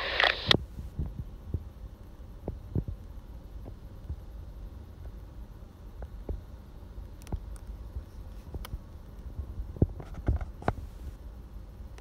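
A voice transmission on a digital trunking scanner's speaker cuts off about half a second in, as the signal drops and the squelch closes. After that there is only a low steady rumble with scattered light knocks and clicks.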